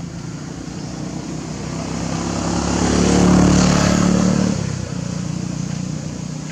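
A motor vehicle's engine passing close by: it grows louder from about a second in, is loudest around the middle, then drops away fairly suddenly.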